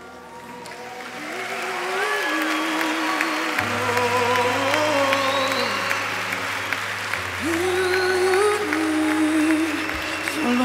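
Live worship band music swelling up over the first two seconds, with voices singing a slow melody and a low sustained bass note coming in about a third of the way through. Crowd noise sits under the music.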